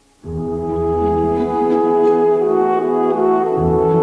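Orchestral ballet music with brass prominent, starting abruptly about a quarter second in after a brief silence and going on in sustained, held chords.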